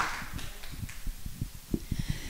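The last of an audience's applause, dying away within the first half second, followed by scattered soft low thumps.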